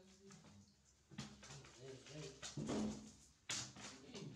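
A man's voice talking, with a sharp smack near the end.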